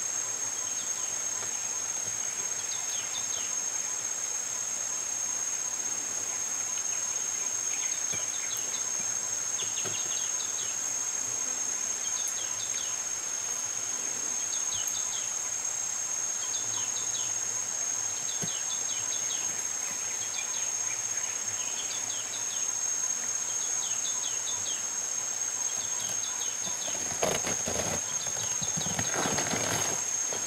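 Steady high-pitched insect chorus with short chirps repeating every second or two. Near the end, loud rustling and tearing as a silverback gorilla rips apart the fibrous layers of a wild banana plant.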